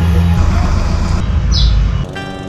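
An engine running with a heavy, steady low rumble. A bird chirps once, briefly, near the end.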